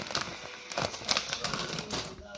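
A plastic crisp packet crinkling and crackling in the hands as it is handled and put down, in a run of irregular sharp crackles.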